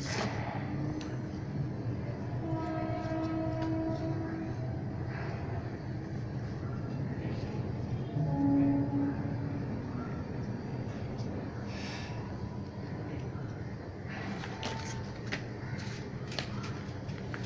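A steady low rumble with two brief horn-like tones, about two and a half and eight and a half seconds in, the second the loudest. Over it, a few short rustles of paper being handled.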